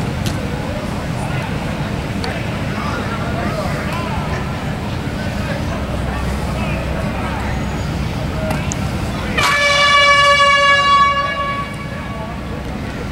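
A practice air horn sounds once, about nine seconds in, a loud steady tone held for about two seconds, over faint distant voices across the field.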